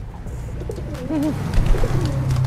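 Domestic racing pigeon cooing in short warbling phrases, the courtship cooing of a male driving a hen (giring). A brief burst of low thumps near the end.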